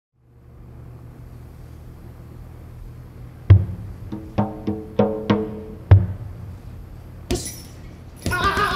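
Bongos struck in a short pattern of about seven sharp, ringing hits over a low steady drone. A single noisier hit follows near the end.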